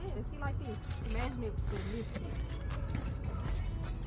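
Faint voices and music in the background, over a low steady rumble.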